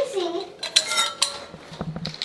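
Metal clinking and jingling as a bunch of keys and a travel mug are picked up off a kitchen counter, with a few sharp clinks that ring briefly about a second in.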